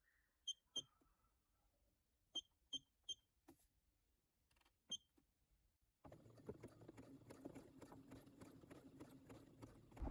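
Computerized sewing machine: six short beeps as its stitch-selector buttons are pressed to set a zigzag stitch. About six seconds in, the machine starts sewing, a quiet rapid, even chatter of the needle as it zigzag-stitches a fabric edge.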